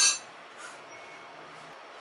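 A hand mixing chopped fresh fenugreek leaves with oil in a steel plate: a short sharp rustle or clink right at the start, then faint, soft rustling of the leaves.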